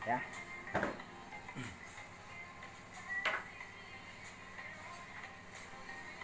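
A few faint clicks and small handling sounds as a cigarette is lit with a lighter, the sharpest click a little past three seconds in.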